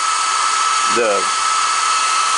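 Atomstack X20 Pro diode laser engraver switched on and idling: a steady high-pitched whine over an even hiss from its cooling fan.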